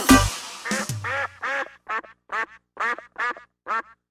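A cumbia band's last loud closing hit dies away, then a duck quacks about ten times in a row, two or three short quacks a second.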